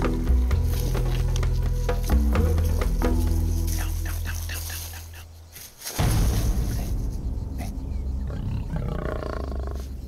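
Background music with a low sustained drone fades out over the first half. About six seconds in, a lion's low growl starts abruptly and carries on loudly.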